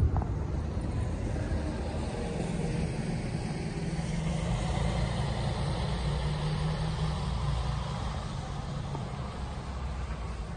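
Road traffic: a motor vehicle's engine and tyres on the road, growing louder through the middle and easing off near the end.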